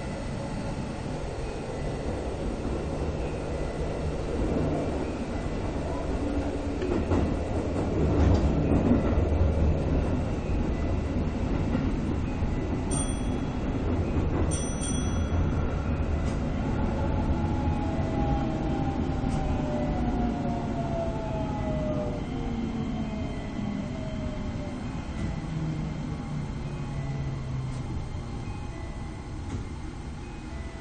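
Keisei 3050-series electric train heard from the driver's cab, rolling into a station: steady rumble of wheels on rail, louder for a couple of seconds early on, then a whine that falls in pitch as the motors brake the train toward a stop. Two short high beeps sound about halfway through.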